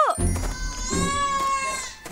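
A toddler crying in fright: a sob ending just at the start, then one long, high wail held for about a second, over light background music.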